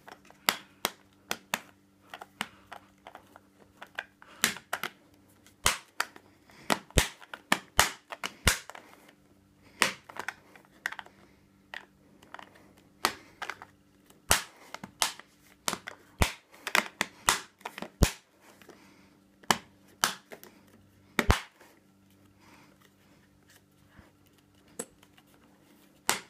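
Plastic coin-tube lids in a silver-coin monster box being pressed and worked by hand: sharp clicks and snaps at irregular intervals, some loud and some faint.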